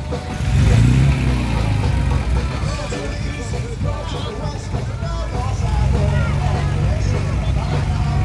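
Vintage Lagonda saloon's engine running with a low rumble, revved briefly about a second in, and louder again in the second half. Crowd chatter around it.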